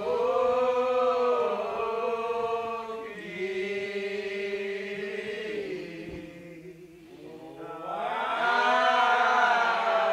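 Church choir singing slowly in long, drawn-out held notes. The singing fades about seven seconds in and then swells up again.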